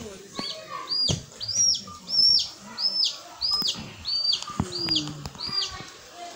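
A bird calling over and over: a string of about ten high, downward-sweeping notes, roughly two a second. A few sharp knocks sound among the calls.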